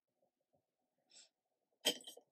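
Near silence, with a faint breath about a second in, then one short, sharp sneeze just before the end.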